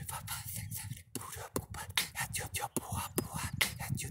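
Human beatboxing: a quick run of sharp, breathy mouth percussion, with the snare made on an in-breath, a fast sucking against the roof of the mouth, so the beat runs on without pausing to breathe.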